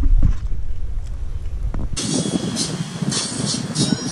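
Wind rumbling on the microphone. About halfway through, it cuts off abruptly and a brighter, hissier sound takes over.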